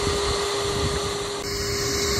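Vacuum used to suck up live yellow jackets from a ground nest, its motor running steadily with a constant hum and airflow noise. The tone of the noise shifts a little over a second in.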